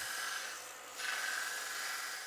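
A Harbor Freight Central Machinery 1x30 belt grinder's abrasive belt grinding a knife blade held against the platen, a steady rasping hiss in two passes, easing off about half a second in and building again about a second in.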